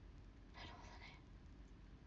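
Near silence with a low room hum, broken about half a second in by a brief whisper from a young woman, lasting under a second.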